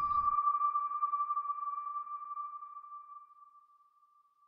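A single steady electronic tone, like a sonar ping, held on one pitch and slowly fading away until it is gone about three and a half seconds in.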